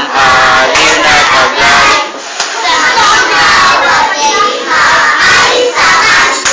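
A group of children singing loudly in unison, close to shouting, with short breaks between phrases.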